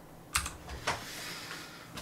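Two faint, short clicks about half a second apart during a pause in speech.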